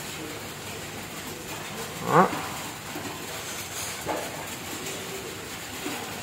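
Steady background hiss of room noise, broken by one short spoken word about two seconds in and a faint, brief pitched sound about four seconds in.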